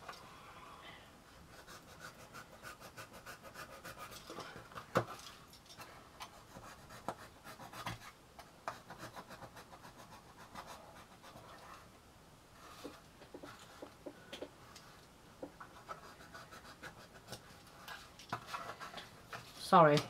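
Small kraft-card pieces being handled and fitted together by hand: faint scratching and rubbing of card on card, with scattered light clicks and one sharper click about five seconds in.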